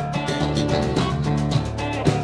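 Live blues band playing an instrumental passage: amplified blues harmonica over guitar, bass guitar and a drum kit keeping a steady beat.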